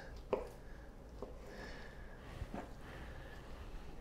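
Knife cutting raw chicken breast on a plastic cutting board: a light tap of the blade on the board about a third of a second in, then a couple of fainter ticks over low room noise.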